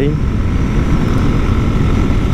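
Motorcycle riding at road speed: steady wind rush and rumble on the microphone with the engine running underneath and a faint steady whine.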